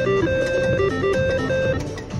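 Slot machine reel-spin music: a guitar-like melody of short stepped notes that plays while the reels turn and stops as they come to rest near the end.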